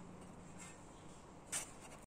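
Quiet room tone with one brief, faint scratchy rub about one and a half seconds in.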